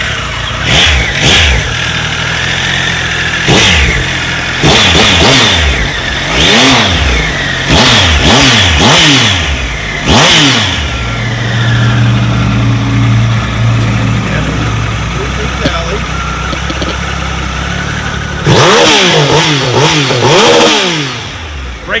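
2018 Triumph Tiger 1200 XCa's three-cylinder engine, breathing through an Arrow exhaust, being revved in repeated sharp throttle blips that rise and fall. It settles to a steady idle in the middle, then gets another run of quick revs near the end.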